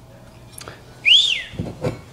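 A person whistling one short note that glides up and back down, about a second in, the loudest sound here. A few light knocks follow near the end as a part is handled on the workbench.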